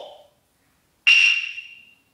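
A single sharp struck hit, about a second in, with a high ringing tone that fades away over about a second.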